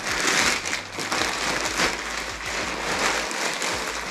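Black plastic poly mailer bag crinkling and rustling continuously as it is pulled open by hand and the wrapped contents are drawn out.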